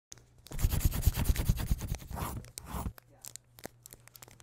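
Rapid scratchy, crinkly paper sounds, dense for about a second and a half, then thinning to a few scattered scratches and clicks.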